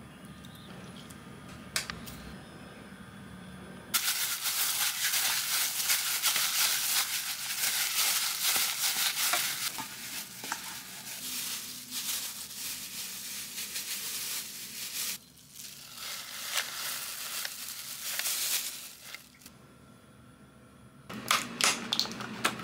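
Plastic-gloved hands mixing and kneading minced pork, the glove crinkling and rustling loudly from about four seconds in, with a short pause partway, until it stops a few seconds before the end. Near the end come sharp clicks and crackles from a plastic clamshell container of cherry tomatoes being opened.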